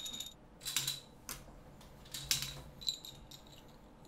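Plastic Connect Four checkers clicking and clattering lightly as players handle them, a handful of separate sharp clicks spread out over a faint low hum.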